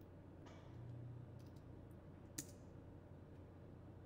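A few faint computer keyboard keystrokes over quiet room tone, with one sharper click about two and a half seconds in.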